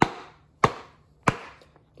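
Wooden glove mallet striking the pocket of a wet leather baseball glove three times, about two-thirds of a second apart, each a sharp smack with a short fading tail. This is the pounding that shapes the pocket while breaking in the glove after a hot water treatment.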